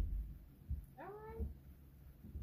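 A cat meowing once, about a second in, a short call that rises in pitch and then levels off. A few dull low thumps come with it, the loudest at the very start.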